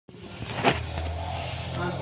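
A steady low hum with one sharp knock about two-thirds of a second in, then a woman's voice beginning to recite a prayer near the end.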